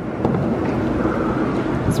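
Steady outdoor background rumble with wind on the microphone, and no distinct splash standing out.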